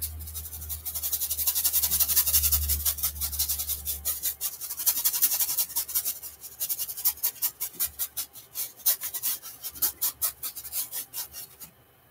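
Paintbrush, nearly dry of acrylic paint, scrubbing on a stretched canvas in quick, repeated scratchy strokes that stop just before the end. A low hum sounds under the first few seconds.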